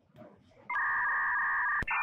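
An electronic two-tone beep, held steady for about a second and cut off by a click, then a few short blips: an edited-in sound effect like a phone tone.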